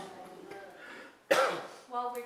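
A single loud cough about a second and a half in, after some faint talk.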